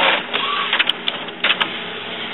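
Epson WorkForce inkjet printer's print-head carriage motor running as the carriage travels over to the cartridge-change position. There is a brief whine early on and a few sharp clicks from the mechanism later.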